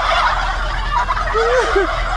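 A plush turkey toy's sound module playing a turkey gobble: a rapid, wavering warble over a hissy background.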